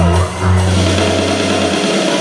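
Live worship band playing rock-style music: electric guitars, bass guitar and drum kit, with a long held bass note through most of the passage.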